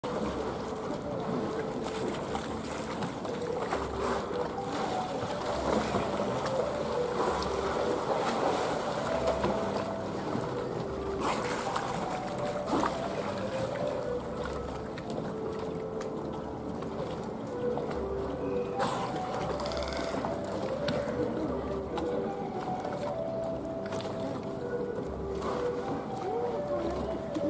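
Ambience of an outdoor bottlenose dolphin pool: water lapping as the dolphins play at the surface, under a steady murmur of voices and background music.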